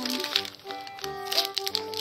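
Wrapping paper crinkling and rustling as a present is unwrapped by hand, over background music with steady held notes.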